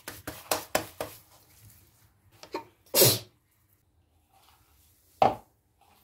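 A child's hands squeezing and pressing a crumbly mixture of grated boiled egg and cheese in a bowl, with a quick run of soft slapping clicks in the first second. Two short breathy bursts follow, the louder about three seconds in and a shorter one near five seconds in.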